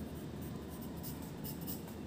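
Pencil writing on paper: a series of short, faint scratching strokes as figures are written and underlined.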